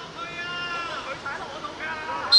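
A man's long drawn-out shout across the pitch, held on one pitch for about a second, followed by shorter calls.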